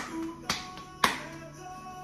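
Hands slapping a ball of potato-and-fenugreek roti dough flat between the palms: three sharp slaps about half a second apart. Background guitar music plays throughout.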